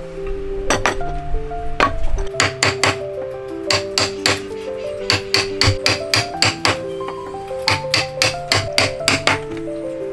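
Wood chisel being struck again and again as it chops out a mortise in a timber, the blows falling in quick runs of a few strikes each, about three or four a second. Background music with steady held notes plays under it.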